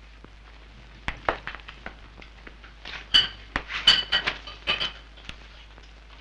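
Cup and saucer clinking against a tray as they are carried and set down: a scatter of light clinks, several with a short high ring, coming thickest in the second half.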